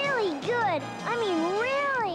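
Cartoon cat-like pet creature vocalising in a few meow-like calls that swoop up and down in pitch, the last one long and wavering, over background music.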